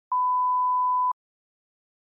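A single steady pure-tone beep at about 1 kHz, lasting about a second and switched on and off with a slight click: a line-up test tone of the kind laid at the head of a video.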